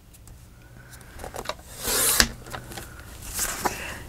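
A sliding paper trimmer's cutting head is drawn along its rail, slicing a thin strip off a sheet of printed paper. It makes one short swish about two seconds in that ends in a sharp click.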